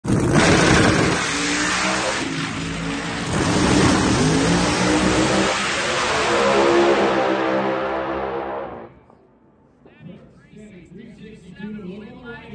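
Two Pro-class drag racing cars' V8 engines at full throttle on a side-by-side pass down the strip, very loud and rising in pitch through the run. The sound drops away sharply about nine seconds in.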